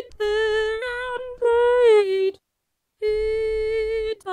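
Vocaloid PRIMA synthesized female voice singing unaccompanied: a short run of notes, the last one gliding down in pitch, a brief pause about two and a half seconds in, then a long held note.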